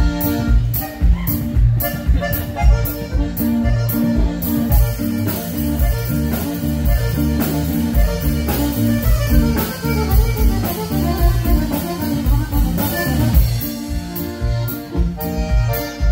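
Live tex-mex honky-tonk band playing an instrumental passage: accordion over electric guitar and a drum kit keeping a steady beat.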